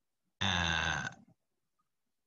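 A man's voice holding one drawn-out non-word sound, a steady hesitation 'uhh', for just under a second, starting about half a second in.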